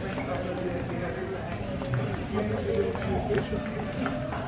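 Indistinct talking of people in a large hard-floored hall, with footsteps of high-heeled boots clicking on the polished floor.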